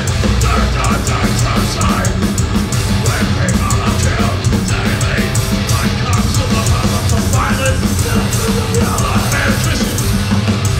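Heavy hardcore band playing live at full volume: distorted guitars and bass over fast, pounding drums, without a break.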